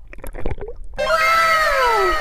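Faint underwater clicks and water crackle from a camera held below the surface. About a second in, a loud added sound effect cuts in suddenly: several pitched tones overlapping, each sliding down in pitch.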